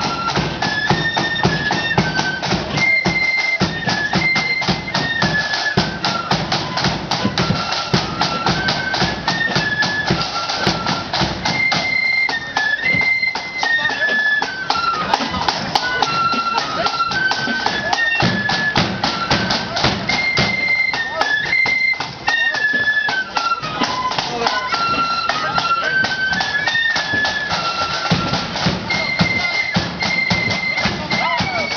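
Marching flute band playing a tune in unison on flutes, the melody stepping up and down over side drums beating a steady, dense marching rhythm.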